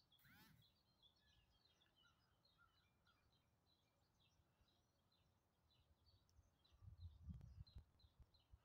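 Near silence with faint, scattered bird chirps. A few low, muffled thumps come near the end.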